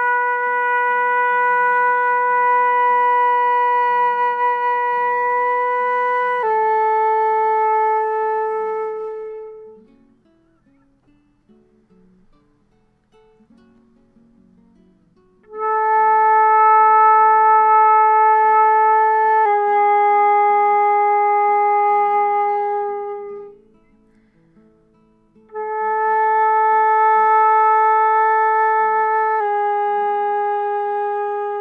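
Concert flute playing slow slurred long tones in the middle register. First a held B falling to A, then after a pause for breath an A falling to G-sharp, played twice. Each note is held steadily for about four to six seconds.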